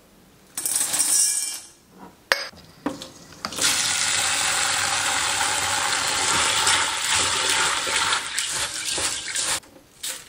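Dried adzuki beans clinking and rattling against an enamel bowl as they are washed by hand, a short rattle about a second in and a few sharp clicks, then a steady rush of water in the bowl for about six seconds while a hand swishes and rubs the beans, stopping just before the end.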